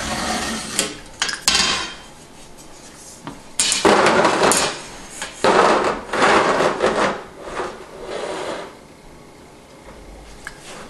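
Metal straightedge and sheetrock being handled and shifted on a workbench: scraping and rubbing in several bursts of about a second each, with a few sharp clicks near the start.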